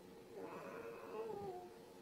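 Faint whining vocal sounds that waver up and down in pitch, over a steady faint hum.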